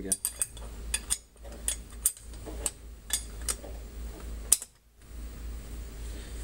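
Irregular metallic clicks and clacks of small hardware being worked by hand, about two a second, with the sharpest click near the end, over a steady low hum.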